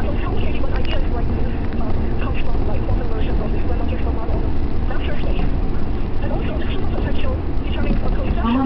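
Steady deep rumble of a moving train heard from inside the carriage, with faint voices talking under it.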